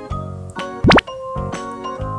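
Background keyboard music, with one short cartoon-style "bloop" sound effect about a second in: a quick upward-sweeping pitch, the loudest sound here.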